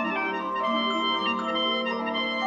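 Background music: film score with sustained chords and a slow melody, the notes held and changing every fraction of a second.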